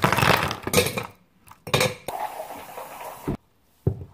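Ice cubes being twisted loose from an ice cube tray and clattering onto the counter and into a stainless steel shaker, in two loud bursts. The second burst trails into a lower rattle that cuts off suddenly about three-quarters of the way through.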